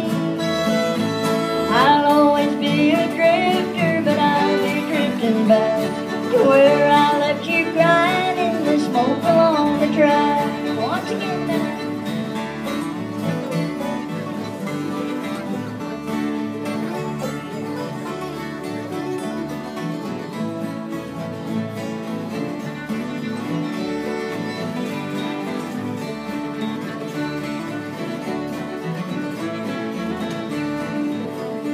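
Several acoustic guitars strumming a country tune together in a steady rhythm, with a lead melody line over them for roughly the first ten seconds before only the strummed accompaniment goes on.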